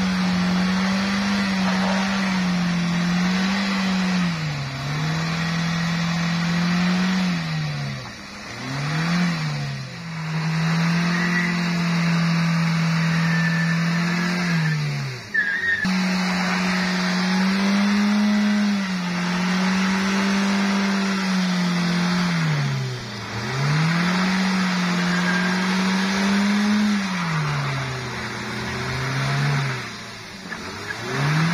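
Toyota Rush SUV's engine revving hard and held high while its tyres spin in thick mud, the pitch sagging and climbing again every few seconds as the throttle eases off and reopens, over a continuous churning of wheels in the mud.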